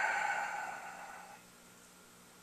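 The fading ring of a struck hard object: several clear tones sounding together and dying away, gone about a second and a half in.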